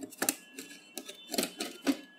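A long plastic part being pressed and clipped onto the metal back chassis of an LED TV: a handful of sharp, irregular clicks and knocks.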